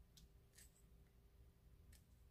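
Near silence with three faint, short crinkles of a small plastic retail package being handled as it is worked open.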